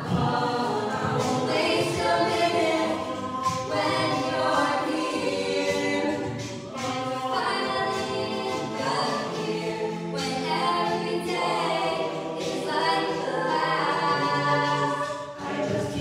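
Mixed-voice a cappella group singing in close harmony, lead voices on handheld microphones over the backing voices with no instruments. In the second half a low bass note is held for several seconds under the chords.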